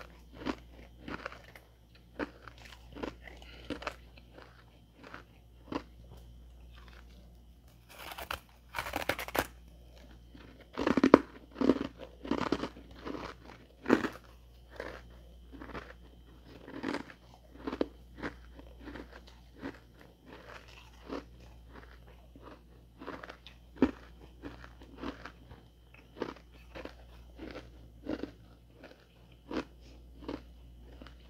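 A person biting and chewing freezer frost close to the microphone, crunching about one to two times a second. A longer harsh rasp comes about eight seconds in, with the loudest crunches just after it.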